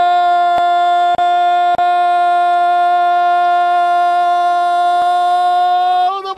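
A Brazilian TV commentator's long, drawn-out goal cry of "gol", one high note held steady without a break.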